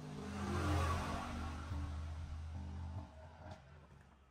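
A motor vehicle's engine running, swelling to its loudest about a second in and fading away near the end.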